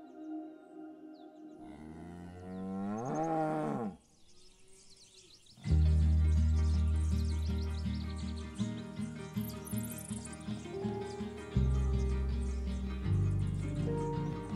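One of the cattle mooing once, a long call that rises and then falls in pitch. From about six seconds in, background music with a steady pulsing beat takes over.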